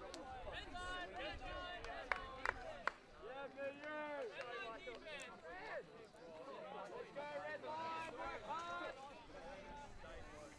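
Players' voices carrying across an open field: overlapping chatter and calls from several people, with three short sharp slaps between about two and three seconds in.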